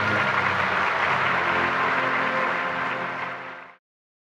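Audience applauding, with the orchestra's last notes fading underneath. The sound cuts off abruptly near the end.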